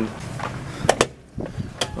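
A door's latch or push bar clacking twice in quick succession about a second in, with another sharp click near the end, as the door is pushed open.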